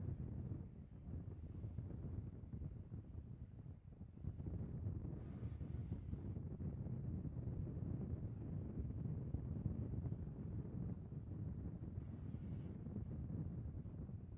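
Wind buffeting an outdoor microphone: a faint, steady low rumble with a couple of brief lulls.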